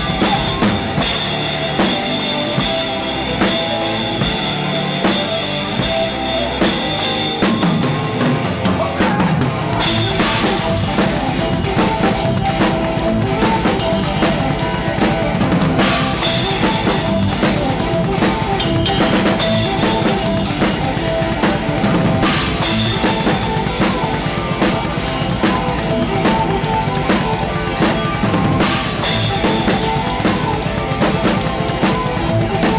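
Live band music with the drum kit heard close: bass drum, snare and cymbals driving the beat under a held melody line. A little before ten seconds in the cymbals drop out briefly, then the kit comes back in with a crash, with further cymbal crashes every several seconds.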